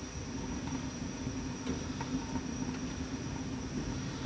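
Steady low rumble of a lit gas cooker burner heating a flat griddle plate, with a few faint taps as wooden kebab skewers are laid down on the plate.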